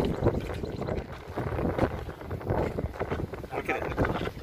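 Indistinct talk from a group of people standing together, with wind rumbling on the microphone.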